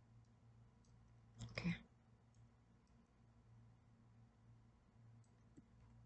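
Faint computer mouse clicks, a few scattered through, over a low steady hum.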